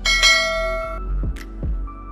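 A bright bell-chime sound effect rings at the start and dies away within about a second, over background music with a regular beat.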